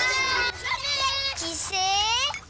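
A child's high voice speaking in a drawn-out, sing-song way, ending on a long rising word.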